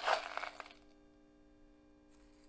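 Impure silver shot clinking against a metal spoon and against itself as it is spooned into the anode basket: a short cluster of clinks in the first half-second or so, then a faint steady hum.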